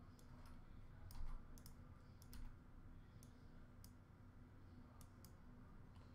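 Faint, irregular clicks from a computer mouse, about a dozen scattered over a few seconds in an otherwise near-silent room.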